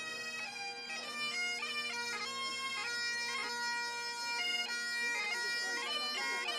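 Two Highland bagpipes playing a march tune together: the chanters step between held melody notes over the steady, unbroken drones.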